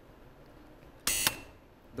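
Quiz-show buzzer sounding once, a short electronic buzz of about a quarter second about a second in, as a contestant buzzes in to answer.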